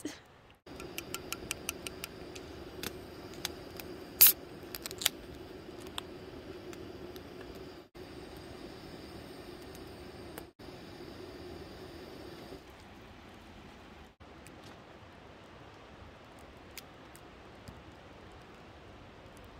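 A small wood campfire crackling, with a few sharp pops in the first five seconds, over a steady low hum that stops about twelve and a half seconds in.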